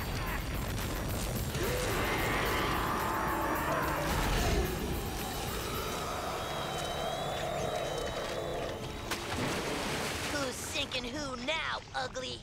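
Cartoon sound effects of a volcanic eruption: dense, continuous rumbling and crashing as the ground splits and lava flows, mixed with background music. Short vocal cries come in near the end.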